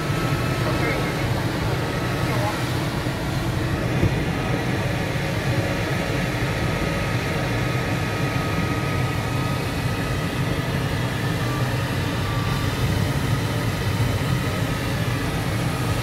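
Steady airflow noise in the cockpit of a PIK-20E motor glider in flight, with faint thin tones coming and going.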